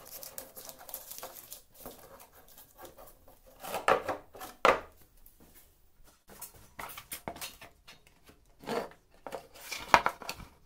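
An empty plastic canister being handled on a wooden workbench: rustling and scraping with a few sharp knocks, the two loudest a little under a second apart near the middle and more near the end.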